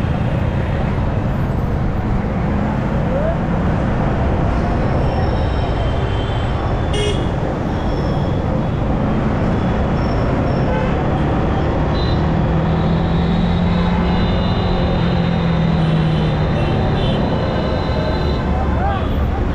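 Steady road and traffic noise from riding a motorcycle slowly through busy city traffic, with vehicle horns honking several times.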